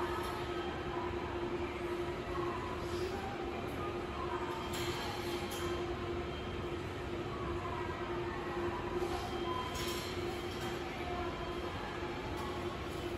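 Railway station ambience: a steady rumble with a constant hum and a few faint clicks scattered through.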